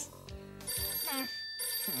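Telephone ringing in short repeated rings: two rings, the first starting about two-thirds of a second in. A voice hums "mm-hmm" over the second ring.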